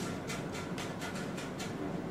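Quiet room tone: a steady low hum with faint, rapid high-pitched ticks, about six a second, that fade out near the end.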